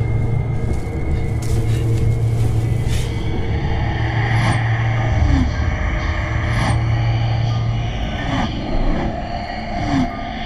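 Eerie horror-film soundtrack: a low, steady droning rumble, with a few short falling swooshes in the second half.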